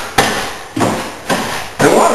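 Four sharp knocks, about half a second apart, each one fading away before the next.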